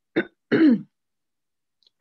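A woman clearing her throat: a brief sound and then a longer one within the first second.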